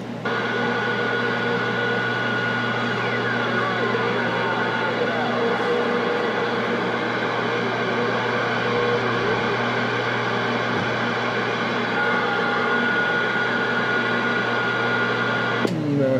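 A Galaxy CB radio's speaker putting out steady static hiss with a high whistle from a noisy incoming signal on channel 28, its S-meter showing a reading. A faint falling whistle sweeps through a few seconds in, and the steady whistle fades for a while before it returns near the end.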